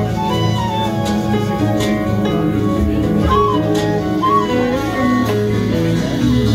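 Live band playing an instrumental passage: a flute melody over bass, keyboards and drums.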